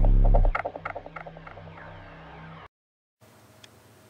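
Intro sting sound effect: a loud, deep boom followed by a run of short, repeating pings that fade away, over a steady low tone that cuts off suddenly about two and a half seconds in. Faint room tone follows.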